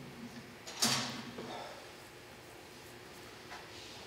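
A brief handling noise at the lectern about a second in, a sharp scrape-like sound that fades quickly, with a fainter one near the end, over quiet room tone.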